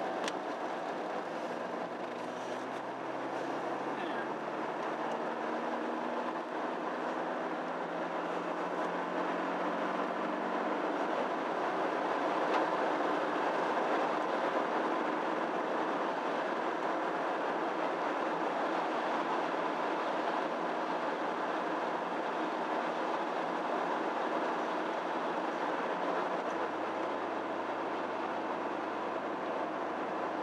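Car interior driving noise: the engine note rises slowly over the first ten seconds or so as the car gathers speed, then settles into a steady rumble of tyres on the road.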